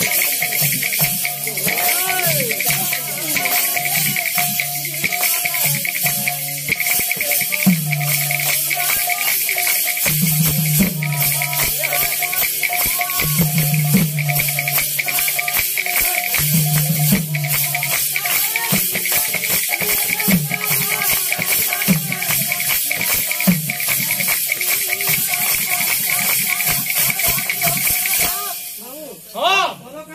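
Sankirtan ensemble playing: khol (mridanga) barrel drums beat fast strokes with deep, ringing bass tones, over a continuous jangle of hand cymbals. The music breaks off near the end and a voice calls out.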